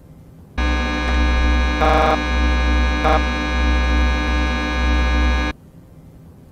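Loud electronic buzzing drone over a deep hum. It starts abruptly about half a second in and cuts off suddenly near the end, with two brief harsher bursts in the middle. It is a deliberate glitch noise in an analog-horror video's soundtrack, meant as a scare.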